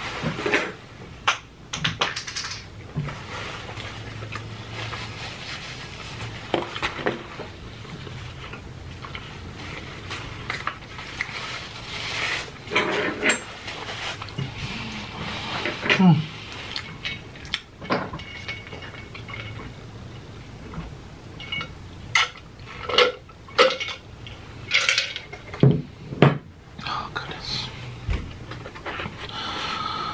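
Close-miked eating: a man chewing pizza, with many irregular sharp mouth clicks and smacks, thicker and louder in the last third, and a few short voiced hums.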